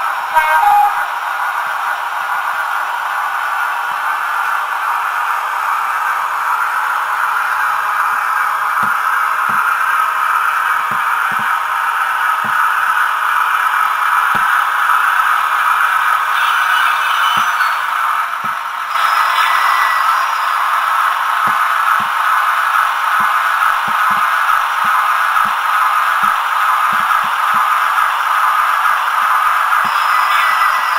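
Sound-decoder recording of a Class 50 diesel engine running steadily, played through the small onboard speaker of a Hornby Class 50 OO gauge model, thin and concentrated in the mid range. From about eight seconds in, soft irregular clicks come from the model's wheels on the track, and the engine sound dips briefly a little before the midpoint.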